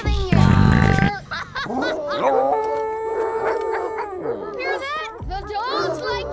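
A cartoon dog howling: one long held howl lasting about three seconds, after a short loud musical hit near the start, with voices and music around it.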